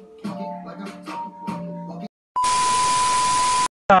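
Music with held notes, cut off abruptly about two seconds in. After a brief gap, a loud edited-in beep over hiss, one steady high tone lasting over a second, stops suddenly.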